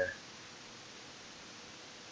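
Faint steady hiss of room tone and microphone noise, with no other sound.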